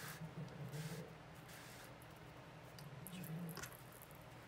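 Faint rustling of yarn being drawn through a stuffed crocheted ball and the ball being handled, a few soft brushing noises near the start, around a second in and again near the end, over a low room hum.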